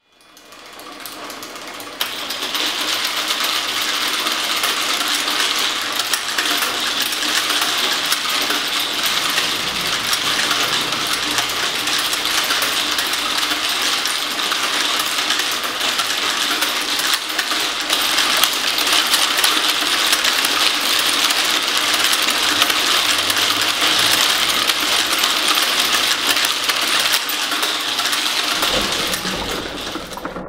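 Kinetic rolling-ball sculpture running: a dense, continuous clatter of many small balls dropping and rolling through acrylic tubes and striking glass and metal parts, fading in over the first couple of seconds.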